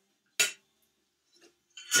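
A single short clink of a frying pan and spatula about half a second in, then near silence.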